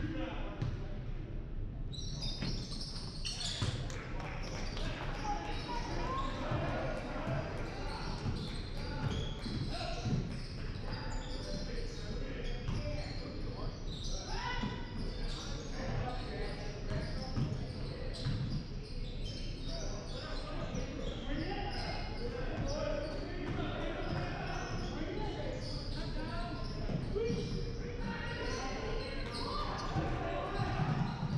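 Basketball game in a large gym with a hardwood floor: a ball bouncing and players moving on the court, under indistinct chatter and calls from players and spectators, all echoing in the hall.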